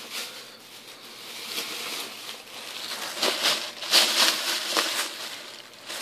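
Rustling and handling noise close to the microphone, irregular scratchy crinkles that grow busier about three to five seconds in.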